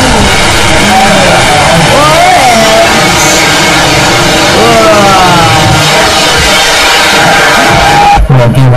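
Loud, dense layered roaring: voices sliding up and down in pitch over a constant heavy noise, with music mixed in.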